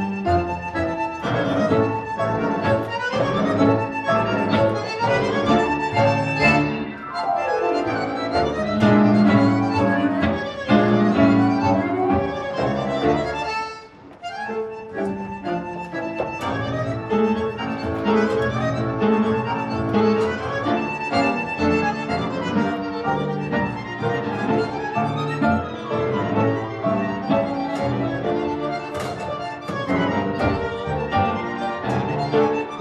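Tango music from a small tango orchestra of violins, double bass, bandoneon and piano. There is a falling slide about six seconds in and a brief break in the music about halfway through before it carries on.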